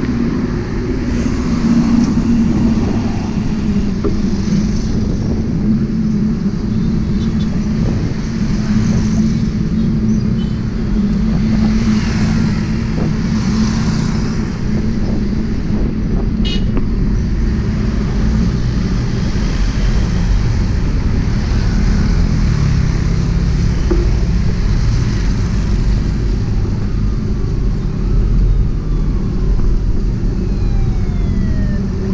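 Steady rush of road traffic and wind on a handlebar-level camera during a ride along a busy street, with motorcycles and cars running alongside. There is a single sharp click about halfway through, and a siren begins wailing near the end.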